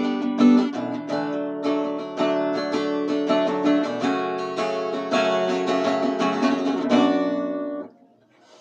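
Acoustic guitar with a capo on the second fret, strummed and picked through an instrumental interlude with no singing. The playing stops abruptly near the end.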